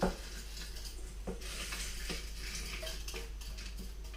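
Dry crushed eggshells rustling as they are scraped and shaken out of a stainless steel bowl into a blender jar, with a few light knocks of the bowl and shells.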